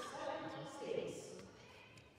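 Indistinct voices talking in a large sports hall, fading out after about a second and a half.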